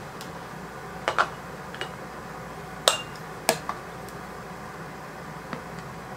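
A few sharp clinks and knocks of a ladle and canning funnel against glass canning jars and a pot, one with a brief glassy ring, over a low steady hiss.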